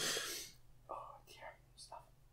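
Faint breathy voice: a sharp breath out at the start, then a few brief whispered sounds.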